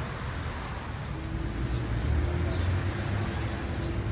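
City street traffic: cars and a bus idling and creeping in congested traffic, a steady low rumble, with a faint steady tone joining about a second in.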